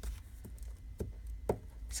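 A few light clicks and taps of hands handling paper and journal pieces on a craft cutting mat, the clearest about a second in and half a second later.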